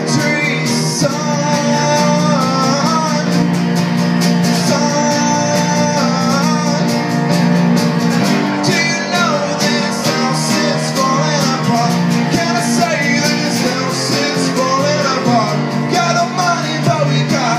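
Live song played on acoustic guitar and electric keyboard, with a man singing the melody.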